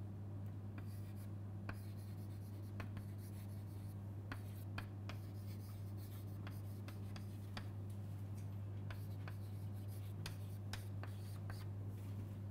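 Chalk writing on a chalkboard: irregular short taps and scratches as the chalk strikes and drags across the board, over a steady low hum.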